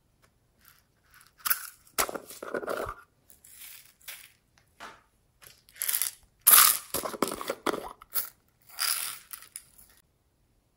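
A string of irregular crunchy rustles and clatters as plastic containers of slime add-ins are handled and opened and beads are tipped onto a bowl of slime, loudest about two-thirds of the way through.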